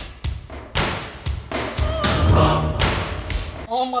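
A series of sharp thuds, about seven over three seconds, over music. A voice starts near the end.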